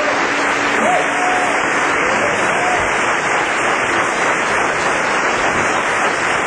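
Live club audience applauding, with a few shouts, as a song ends; the last guitar note rings out under the clapping for about the first two seconds.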